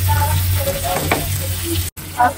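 Chopped onion and tomato sizzling in hot oil in a nonstick wok, stirred with a wooden spatula, with a low steady hum underneath and one sharp tap about a second in. The sound cuts out for an instant near the end.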